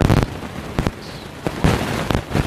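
Electrical interference on the recording's audio: a loud crackling static hiss that cuts in suddenly, with sharp pops and crackles through it.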